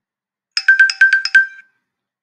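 A short electronic chime jingle, like a ringtone: a quick run of short, bright high notes lasting about a second.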